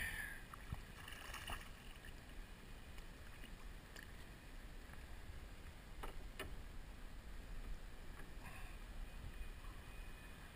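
Low, steady water and wind rumble around a fishing kayak, with a few faint sharp clicks and knocks, two of them close together about six seconds in.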